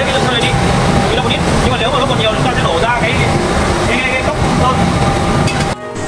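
Indistinct voices of people talking over a steady, dense machine noise from the spray-painting line. The sound cuts off abruptly near the end.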